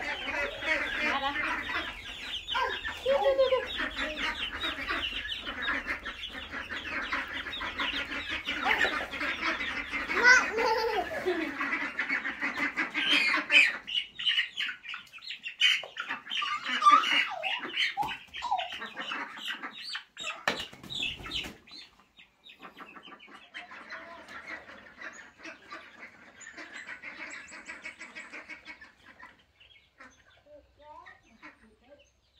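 A flock of young ducks and chicks calling over scattered feed, many rapid high calls overlapping. The calls grow fainter after about 22 seconds.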